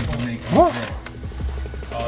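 A short pitched vocal exclamation that rises and falls about half a second in, over steady background noise with a low hum.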